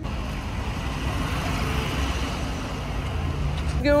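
An ambulance drives along a street with its engine running and tyres on the road, heard as a steady rumbling traffic noise; its siren does not sound.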